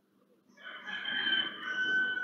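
A single long, high-pitched animal call, starting about half a second in and held at a steady pitch, like a rooster's crow.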